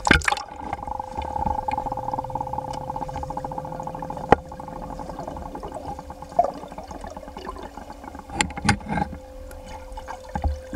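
Muffled underwater pool sound through a submerged camera: a splash as it goes under, then a steady hum with a rippling, bubbling texture. There is a single sharp click about four seconds in and a few short splashy bursts near the end.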